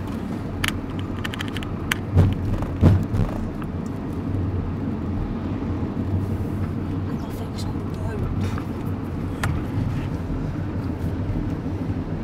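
A horse lorry's cab on the move: steady engine and road rumble, with a few short knocks and rattles in the first three seconds.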